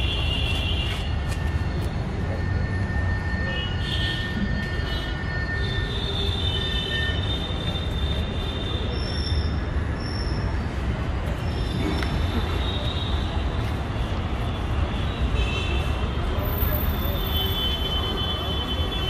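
Steady outdoor background rumble with a strong low end, with faint high-pitched sounds coming and going above it.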